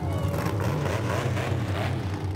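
Mega truck's 500-cubic-inch big-block Chevrolet V8 running steadily with a deep, even rumble.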